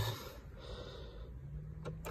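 Quiet background noise with no clear event; a faint low hum comes in about halfway through and a small click sounds near the end.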